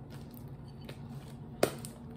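Freshly activated glue slime being squeezed and kneaded by hand, with faint soft squishes and small clicks. One sharp click about one and a half seconds in is the loudest sound.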